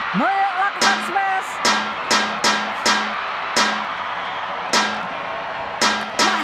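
Badminton rackets striking a shuttlecock in a fast exchange: sharp hits at uneven spacing, some less than half a second apart and some about a second apart, over steady arena crowd noise. A voice exclaims in the first second or so.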